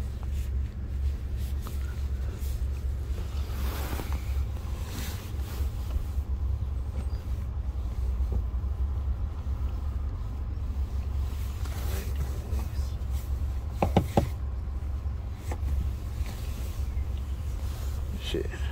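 Steady low rumble inside a pickup truck's cab, typical of the engine idling, with a few brief knocks and rustles from handling inside the cab, including two sharp knocks about fourteen seconds in.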